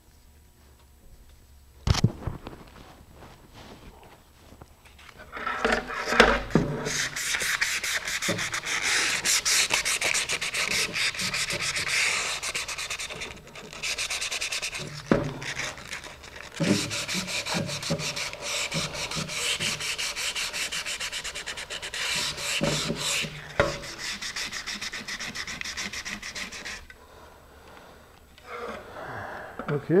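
Rough sandpaper rubbed by hand along the fin root edges of a fiberglass rocket body tube, in rapid back-and-forth strokes that roughen the surface so epoxy will grip. The sanding starts about five seconds in and runs for about twenty seconds with brief pauses and a few knocks. A single sharp click comes about two seconds in.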